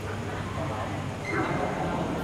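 Indistinct voices of players talking between rallies in a large echoing sports hall, over a steady low hum.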